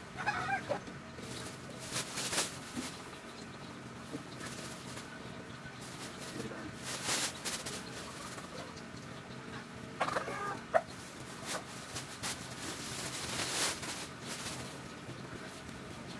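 A chicken clucking in two short runs, near the start and again about ten seconds in. Underneath are several brief rustling pours as carbonized rice hull is shaken out of a woven plastic sack.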